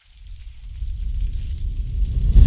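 Deep rumbling ambient soundtrack fading in from silence and growing steadily louder, with a faint hiss above it: a transition swell for a new section.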